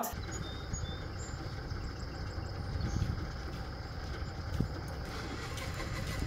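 Wheel loader's diesel engine running steadily, a low rumble.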